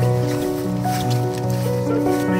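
Background music of long held notes, over a haze of outdoor noise that comes in with the walking shot.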